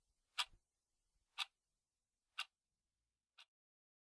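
A clock ticking once a second, four ticks in all, the last one fainter, over near silence.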